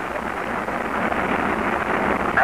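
Steady noise of the Saturn V rocket's first-stage engines during liftoff, in an old archival recording with the highs cut off.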